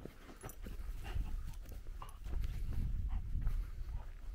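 Giant schnauzer moving close by on a dirt trail: quick footfalls and scuffs over a low rumble, growing louder.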